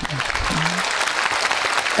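A large seated audience clapping, a dense steady patter of many hands.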